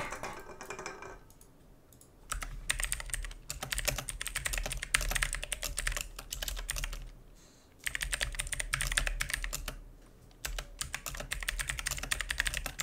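Typing on a computer keyboard: quick runs of key clicks, the first starting about two seconds in, broken by two short pauses.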